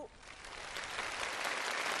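Studio audience applause, starting quietly and building over the first second to a steady level.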